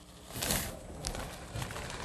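Dry brownie mix poured from a bag into a stainless steel mixing bowl: a soft rushing hiss that swells about half a second in, then runs on more quietly.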